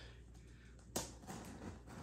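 Mostly quiet room tone with a single sharp click about a second in and a few faint handling noises after it, from hands working at the end of a cardboard shipping box.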